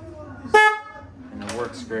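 Screaming Banshee mini horn on a Sur-Ron electric dirt bike giving one short, loud honk about half a second in, tested just after installation.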